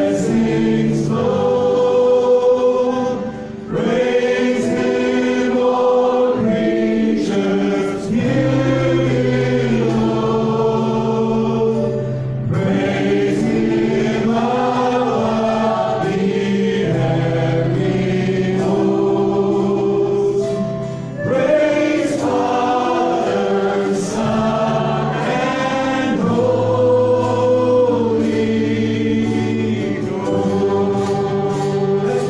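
A live church worship band playing a gospel song: male and female voices singing together over acoustic guitar, electric guitar and a drum kit, with cymbal hits recurring through the song.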